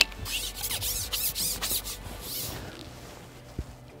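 Rasping rubs from a carbon fishing pole's top kit being handled as the elastic and Dacron connector are pulled out of the tip, a quick series of strokes that fades after about two and a half seconds. A single light tap follows near the end.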